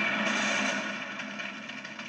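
Cartoon sound effects of a fiery blast and fireworks from an animated trailer, heard through a TV speaker: a noisy rush that slowly fades away.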